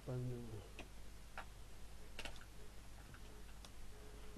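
A few faint, irregular clicks and light knocks of small objects being handled and moved about, over a faint steady low hum.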